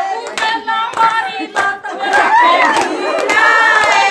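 Group of women singing a Haryanvi folk song together while clapping their hands, with several sharp claps standing out over the voices.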